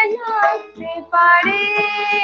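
A young woman singing a Bengali song solo: a short phrase, a brief breath about a second in, then a long held note.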